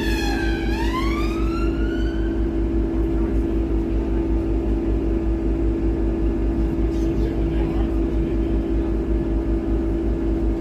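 Double-decker bus engine running with a steady drone and low, even rumble heard from inside the bus. An emergency vehicle siren falls and then rises in pitch over the first two seconds or so, then stops.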